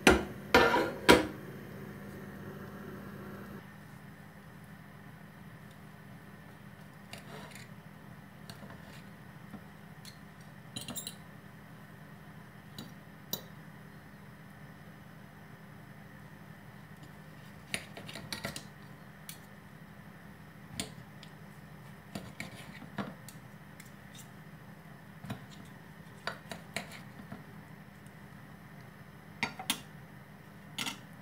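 A metal pot and spoon clanking loudly a few times right at the start as dumplings are lifted out, over a low hum that stops a few seconds in. Then scattered light clinks and scrapes of a steel knife and fork on a china plate as breadcrumb-coated dumplings are cut open.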